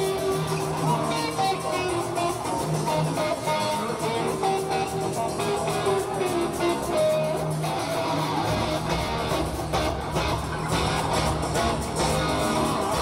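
Live hard-rock band recorded from the audience, with electric guitar leading an instrumental passage over bass and drums. The low end gets much fuller about eight and a half seconds in.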